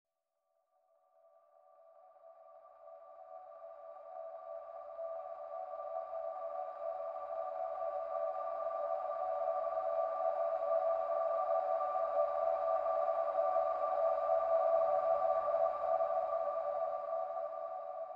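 Sustained ambient synth drone of a few steady held tones. It fades in gradually over the first few seconds, holds, and eases off slightly near the end.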